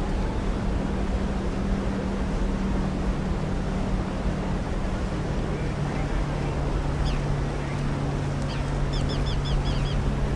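Steady drone of a motorboat engine under wind and water noise, its hum shifting slightly in pitch about halfway through. A run of about six short high chirps comes near the end.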